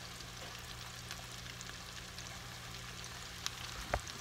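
Hot oil sizzling and crackling steadily as battered onion rings deep-fry in a pot, over a low steady hum. A sharp knock sounds just before the end.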